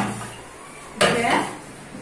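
Rolling pin knocking against a stainless-steel worktable twice, once at the start and again about a second in as it is set down, each knock ringing briefly.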